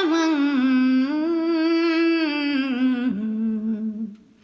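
Solo unaccompanied voice singing long held notes, gliding slightly between pitches and stepping down to a lower note about three seconds in, then breaking off at the end.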